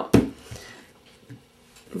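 Wood-mounted rubber stamp pressed down hard on paper on a desk: one sharp knock just after the start, then a couple of faint taps. The stamp is being stamped off on scrap to blot away some of its ink and lighten the image.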